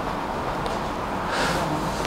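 Steady background noise, with a brief soft hiss about one and a half seconds in.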